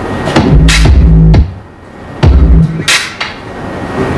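Electronic drum samples triggered from the performance pads of a Vestax VCI-380 DJ controller, played through a high-pass filter effect that is being turned up. Sharp hits recur, with heavy low notes about half a second in and again a little past two seconds.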